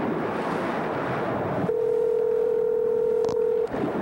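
Telephone line picked up: a hiss, then a steady telephone dial tone for about two seconds, with a click just before it cuts off.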